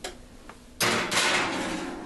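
Kitchen oven door being shut: a small click, then two quick loud bangs just under a second in, fading out over about a second.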